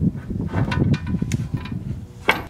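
Steel hitch shank of a swing-out hitch carrier sliding into a vehicle's trailer-hitch receiver: irregular scraping and rumbling with a few sharp metal knocks as it seats.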